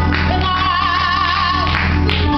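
A woman sings a gospel solo over organ accompaniment, holding one note with vibrato through the middle. Under her, the organ holds a steady low bass note.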